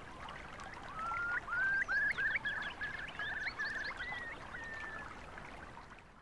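A small bird singing a run of short whistled and trilled notes for a few seconds, over a faint steady hiss of a stream, fading out at the end.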